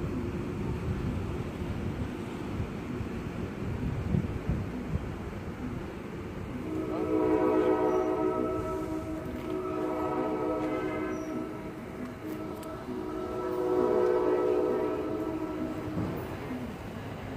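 Low rumble of a commuter train rolling out, then a multi-tone train horn sounds three long blasts from about a third of the way in to the end.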